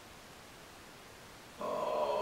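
Faint steady room hiss, then about one and a half seconds in a man's voice starts up with a drawn-out sound.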